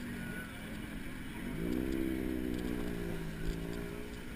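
A motor vehicle engine accelerating in passing traffic: its note rises about one and a half seconds in, holds steady for a couple of seconds, then fades, over a steady hum of street traffic.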